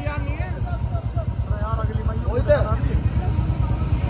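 Men's voices talking in the background over a steady, pulsing low rumble.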